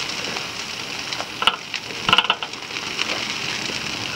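A large brush pile of tree prunings catching alight and burning: a steady crackling hiss with a few sharper, louder pops about one and a half and two seconds in.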